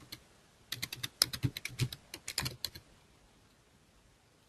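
Computer keyboard typing: a quick run of about a dozen keystrokes over roughly two seconds, starting just under a second in.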